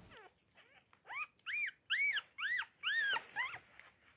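Newborn miniature pinscher puppy crying: about six high, squeaky calls, each rising then falling in pitch, coming in quick succession from about a second in.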